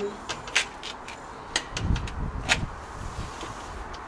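A handful of sharp clicks and knocks as a plastic humane mouse trap is handled against a wire cage, with a low scuffing rumble about two seconds in.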